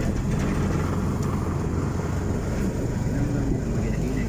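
A motorcycle tricycle's engine running steadily with road noise during the ride. A faint voice comes through near the end.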